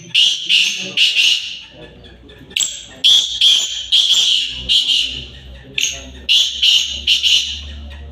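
Caged black francolins calling: three bouts of loud, high, harsh notes, each bout a quick run of several notes, with short gaps between them.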